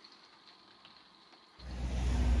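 Near silence, then about one and a half seconds in a steady low rumble of a vehicle engine running starts abruptly.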